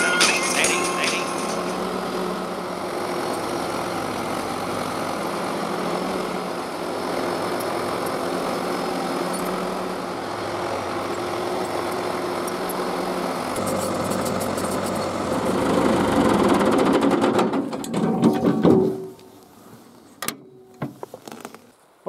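A 1976 John Deere 450-C crawler bulldozer's four-cylinder diesel engine works steadily under load as the dozer pushes dirt and rock with its blade. It grows louder for a couple of seconds near the end, then cuts off suddenly, leaving a quiet stretch with a few faint clicks.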